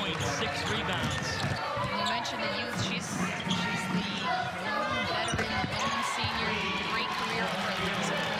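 Basketball dribbled on a hardwood court during live play. Repeated short bounces sound over the background noise of the arena crowd and voices.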